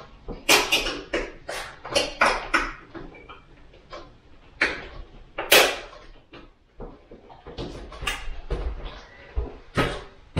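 A roller window shade and its mounting clips being handled and fitted at the window sill: an irregular run of clicks and knocks, the loudest about half a second in and again around five and a half seconds.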